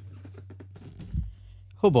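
Large cardboard box being handled and lifted, its sides giving soft, scattered scrapes and creaks, with a dull knock about a second in, over a steady low hum. A man's "oh" starts near the end.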